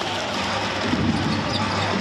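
Basketball being dribbled on the hardwood court over steady arena crowd noise.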